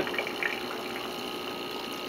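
Steady bubbling water with a faint pump hum: air from an aquarium air pump bubbling out of an algae scrubber in a pond.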